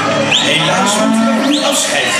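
Hereford cattle mooing, two calls about a second apart.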